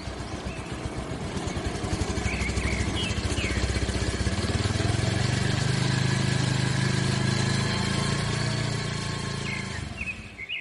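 Motorcycle engine running steadily as the bike rides along, growing louder over the first few seconds and easing off near the end. A few faint bird chirps come through about two to three seconds in.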